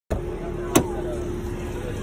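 A car with its door open: a steady hum, a single sharp click about three-quarters of a second in, and faint voices.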